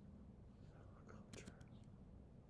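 Near silence: room tone with faint whispered muttering about a second in.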